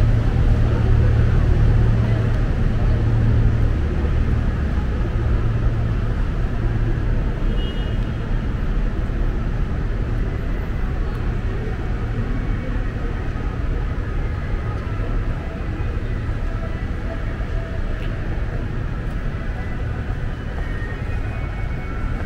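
City ambience with a steady low engine rumble, strongest in the first few seconds and slowly fading, over a general hum of traffic and faint distant voices.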